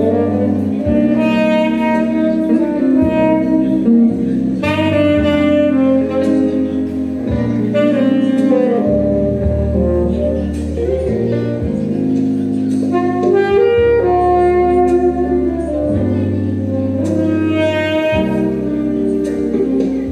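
Saxophone playing a jazz melody line in sustained, shifting notes over a bass accompaniment.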